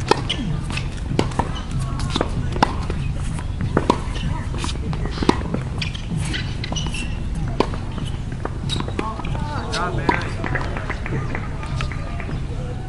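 Tennis ball hit by rackets and bouncing on a hard court: sharp pops every second or so, the first as a serve is struck right at the start. Underneath runs a steady low rumble, with distant voices.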